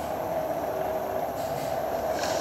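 Steady mechanical background hum of an enclosed room, even and unbroken.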